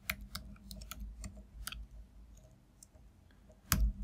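Typing on a computer keyboard: a quick run of key clicks over the first two seconds, then a few sparse ones and a single louder click near the end.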